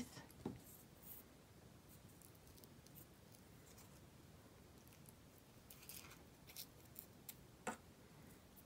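Near silence with a few faint rustles and small clicks of crepe paper being handled as a glue-lined strip is wrapped around a flower stem, the most distinct click near the end.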